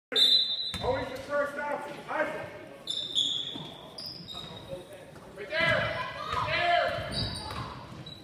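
Youth basketball game in a gym: a basketball bouncing on the hardwood court, with short high squeaks and voices shouting. All of it echoes in the large hall.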